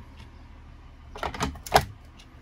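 Hard plastic sun cover being fitted over a Lowrance Hook fish finder: a few knocks and clicks in the second half, the loudest a sharp click near the end.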